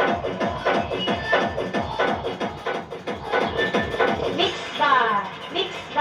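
A song with a fast, steady beat, about four beats a second, played through the repaired Ahuja BTZ10000 power amplifier and its loudspeakers as a playback test, with falling swooping sounds near the end. It comes through clear: the amplifier, shorting before its bad transistor was replaced, now passes audio cleanly.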